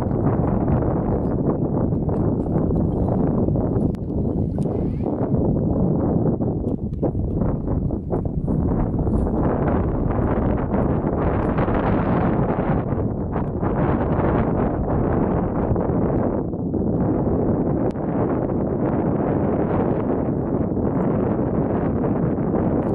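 Wind buffeting the microphone outdoors: a steady, loud rumbling hiss that rises and falls slightly.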